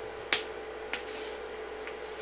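Chalk tapping and scratching on a chalkboard as letters are written: three sharp taps, the loudest about a third of a second in, with short scratchy strokes between them.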